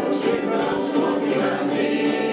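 Ukulele band performing live: several ukuleles strummed in a steady rhythm while a mixed group of men and women sing together.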